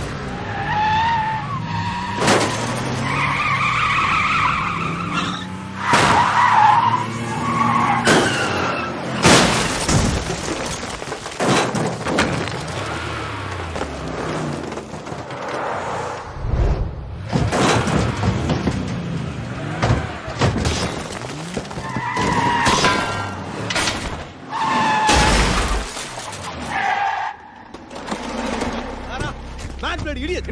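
Car-chase film soundtrack: SUV engines revving, tyres skidding and squealing, and repeated sharp crashes, over background music.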